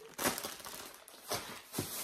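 Plastic bags of salad kit crinkling a few times as they are handled and moved.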